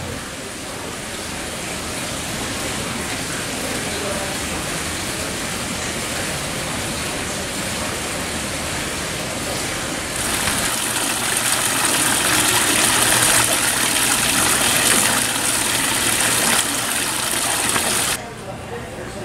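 Fountain water splashing steadily, louder and brighter from about ten seconds in, cutting off at the end.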